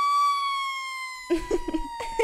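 Cartoon siren sound effect: a single held tone that slides slowly down in pitch and fades away. Short chirp-like sounds with bending pitch begin about a second and a half in.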